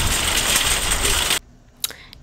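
Metal shopping cart rattling as it is pushed over parking-lot pavement, with wind noise on the microphone. It cuts off suddenly about one and a half seconds in.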